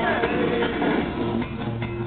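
Live rock band playing loudly, led by electric guitar and bass guitar, heard through the limited range of a small camera's microphone.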